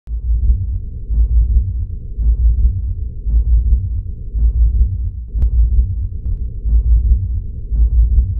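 Deep synthesized bass pulse of a logo-intro soundtrack, repeating about once a second. There is a single sharp click about five and a half seconds in.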